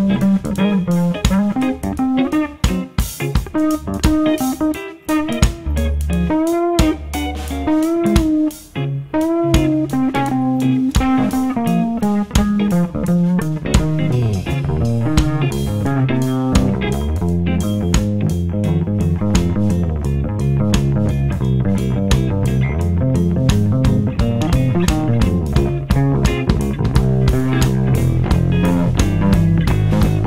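Live band playing an instrumental section, led by an electric bass guitar playing melodic lines with bent notes over electric guitar and drums. About halfway through, the playing settles into a denser, steady groove.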